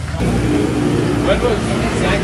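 Street traffic: a motor vehicle's engine running close by, with a steady low rumble.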